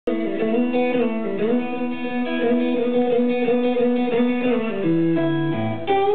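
Electric guitar played alone through an amplifier: held notes with string bends, then a run of low notes stepping downward near the end.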